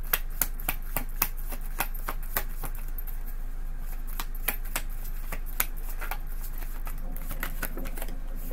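A tarot deck being shuffled by hand, overhand style, the cards snapping against each other in sharp, irregular clicks a few times a second.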